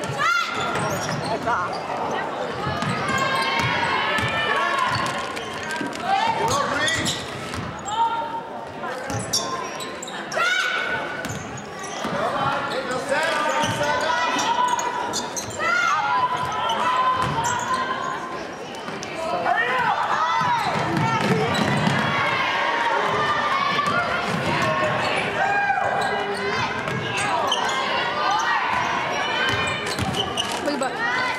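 Basketball game on a hardwood gym floor: the ball being dribbled, many short sneaker squeaks, and the voices of players and spectators filling a large, echoing gym.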